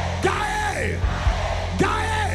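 A man's amplified voice shouting into a microphone in separate cries, each falling in pitch, over held keyboard chords with a steady low drone.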